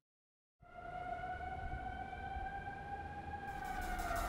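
A brief silence, then a single long siren-like tone that sinks slowly in pitch, with a low rumble beneath it.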